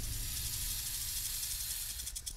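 Synthetic snake-hiss sound effect: a steady hiss over a low rumble, slowly easing off.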